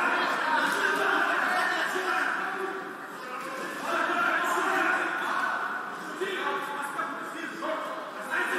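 Speech: a man talking, with no other sound standing out.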